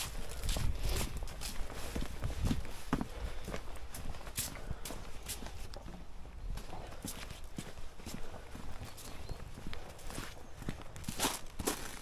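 Footsteps of a person in work boots walking over leaf litter and grass, then onto paving stones, as a string of irregular soft knocks about one or two a second.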